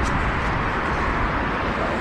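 Steady road-traffic noise from a city street, an even hiss over a low, uneven rumble.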